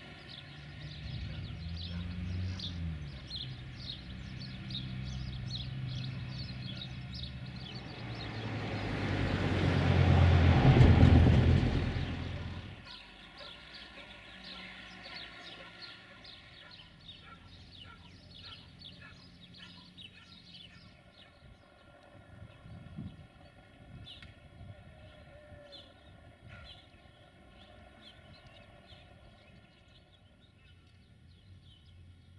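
A small rail service vehicle's engine runs, then swells to a loud rush as it passes close about ten to twelve seconds in, and cuts off suddenly. Birds chirp throughout, and it is quieter afterwards.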